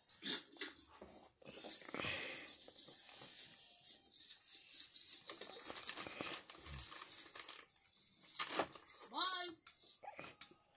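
Crinkling and rustling of a plastic snack wrapper as an Oreo is taken out, for several seconds, with a child's voice briefly near the end.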